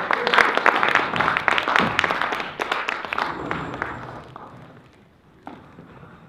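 Audience applauding, dense clapping that fades out over about four seconds.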